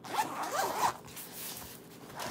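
Zipper on a black zippered Bible cover being pulled open in one run of just under a second.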